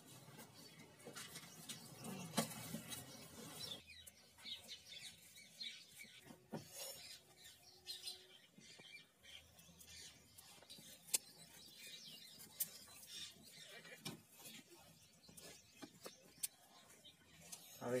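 Quiet ambience: faint voices in the first few seconds that stop abruptly, then occasional bird chirps and scattered sharp clicks.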